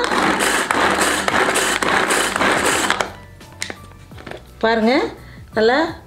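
Pull-cord plastic hand chopper with stainless steel blades, its cord yanked repeatedly so the blades whir and chop vegetables inside the bowl, pulsing with each pull about two or three times a second and stopping about three seconds in. A woman's voice follows near the end.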